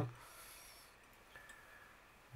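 Near silence: quiet room tone, with a couple of faint soft ticks about a second and a half in.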